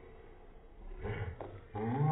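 Two short, loud vocal outbursts from people, one about a second in and a louder one near the end, with no words.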